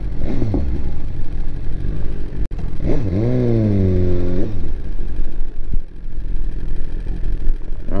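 2018 BMW S1000RR's inline-four engine running at low speed in city traffic. About three seconds in there is a drawn-out pitched sound with a wavering pitch, lasting about a second and a half. There is a sharp click a little before it.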